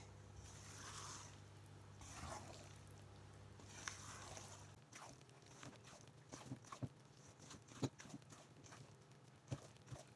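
Faint scraping and squishing of a silicone spatula folding thick muffin batter in a stainless steel bowl. In the second half there are scattered light taps of the spatula against the bowl, the sharpest about eight seconds in.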